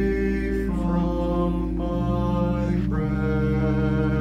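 A mixed choir of men's and women's voices singing a slow hymn in long-held chords, the harmony shifting every second or so over a steady low note.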